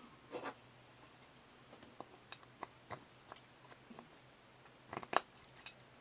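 Quiet handling noises: light clicks and taps of a hardwood block and a small metal pin against a drill-press table, with two sharper clicks about five seconds in. The drill press is not running.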